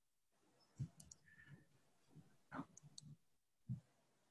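Near silence: room tone with a few faint clicks and short, low murmurs.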